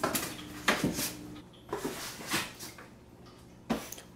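Cats jumping into and scrabbling about inside an empty cardboard box: a scattered series of knocks, thumps and scrapes on the cardboard at uneven intervals.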